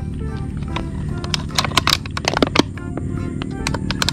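Background music with steady sustained tones, with scattered sharp clicks and crackles over it.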